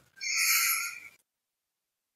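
A person's short breathy sigh, about a second long, after which the audio drops to dead silence.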